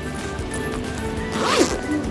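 A zipper on a shoulder bag pulled once in a quick sweep about one and a half seconds in, over background music.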